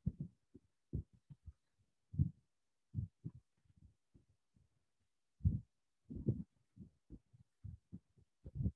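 Irregular muffled low thumps and rubbing, a few a second with short gaps of silence between them: handling noise picked up by a wired earbud headset's microphone.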